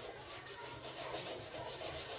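Two plastic-bristled hand brushes scrubbing sneakers in quick back-and-forth strokes, a steady scratchy rubbing.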